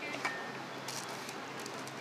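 Light clinks and clicks of kitchen utensils against bowls and a baking tin over a low steady room hum, with one sharper clink that rings briefly about a quarter second in.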